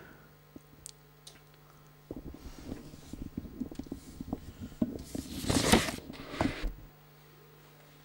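Irregular soft knocks and rustling close to a microphone, with a louder rustle about five seconds in, over a steady low electrical hum.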